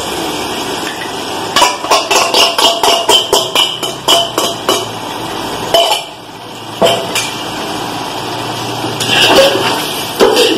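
Metal utensils knocking together as a steel bowl of curd is tapped and scraped out over an aluminium cooking pot: a quick run of about a dozen sharp clinks, about four a second, then two single knocks. Near the end comes the sound of a spoon starting to stir the curd into the chicken masala.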